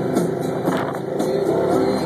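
Rock music with guitar plays over a car's engine accelerating, with a low engine hum growing stronger in the second second.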